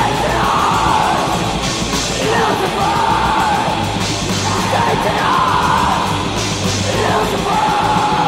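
Black/thrash metal: distorted guitars and fast drums with crashing cymbals under harsh yelled vocals, loud and unbroken.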